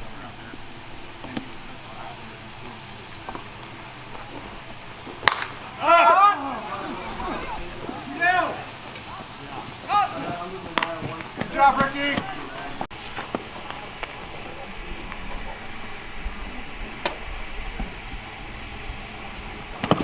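Short shouted calls from players and spectators across a baseball field, several in a row through the middle seconds, over a steady open-air hiss. A single sharp crack comes just before the first shout, with a couple more faint clicks later.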